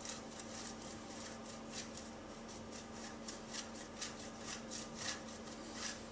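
Cheese being grated on a steel box grater: a run of quick scraping strokes, about three a second, that stops near the end.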